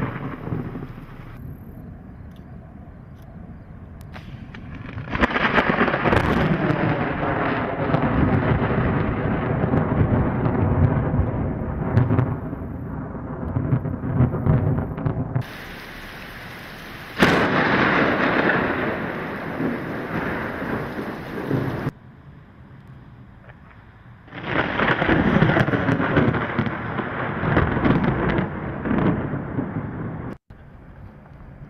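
Recorded thunder: several peals, with a long rolling rumble, a sudden sharp crack a little past the middle that rumbles away, and another rolling peal near the end.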